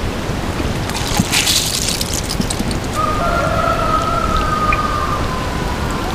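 Water from a Haws watering can's rose falling onto soil in a steady, rain-like patter; the rose seems partly plugged.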